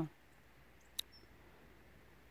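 Near silence broken by one sharp click about halfway through, with a faint, brief high chirp just after it.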